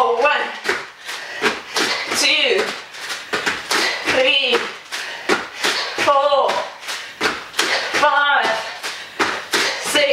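Two people doing burpees on a wooden floor: a busy run of slaps and thuds from hands and feet landing, with a short vocal call about every two seconds in time with the repetitions.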